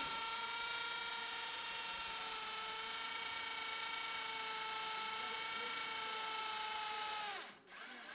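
Handheld electric drill running steadily as it bores a hole into the base of a Christmas tree trunk. Its whine sags slightly in pitch, then winds down and stops a little before the end.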